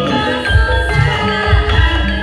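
Javanese gamelan music: ringing bronze metallophones and gongs playing many sustained tones over repeated low drum strokes, accompanying a wayang kulit shadow-puppet play.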